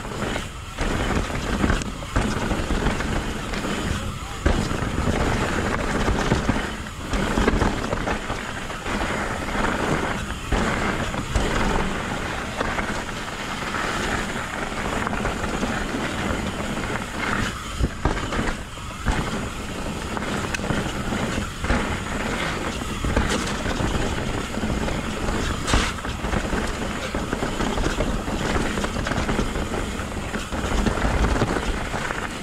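Mountain bike riding fast down a dirt trail: wind rushing over the camera's microphone and a steady rumble and rattle from the tyres and bike on rough ground, the level rising and dipping unevenly with the terrain.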